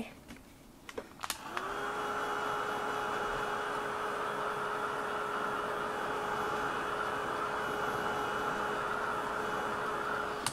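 Handheld craft heat tool switched on with a click about a second in. Its motor spins up, with its hum rising briefly into a steady pitch, then blows steadily with a whirring hum as it dries freshly applied acrylic glaze paint.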